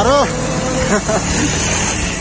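Motorcycle engine running at low speed under a steady rumble, with a man calling out loudly at the start and briefly again about a second in.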